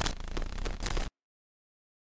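Outro sound effect under the end logo: bright, metallic jingling with quick sharp strokes that cuts off abruptly about a second in.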